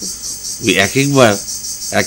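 A man's voice speaking a short phrase over a steady, high-pitched chorus of crickets that runs under everything.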